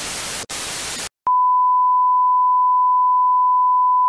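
TV static hiss with a few brief dropouts that cuts off about a second in. After a click, the steady test tone of a colour-bar test card sounds as one continuous beep.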